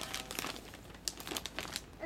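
Wrapping paper crinkling and rustling in quick, irregular crackles as a small child's hands pull and crumple it open, with a little tearing.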